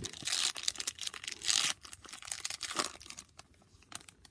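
A foil trading-card pack wrapper being torn open and crinkled by hand, with two louder rips in the first two seconds and then fainter crinkling.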